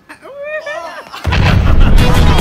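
The music cuts out and a short cry with a wavering pitch is heard. About a second in, a loud explosion-like blast sound effect follows.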